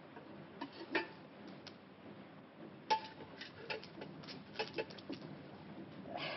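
A run of light clicks and knocks as ripe bananas are handled and pulled from a stack of banana bunches. The loudest comes just before three seconds in, and there is a steady hiss under it all.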